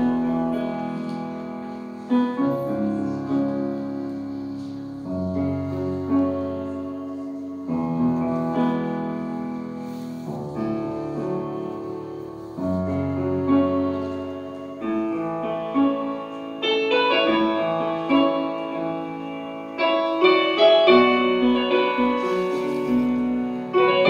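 Grand piano playing a slow solo piece: sustained chords struck every two to three seconds over deep bass notes, becoming busier and louder with quicker notes in the last several seconds.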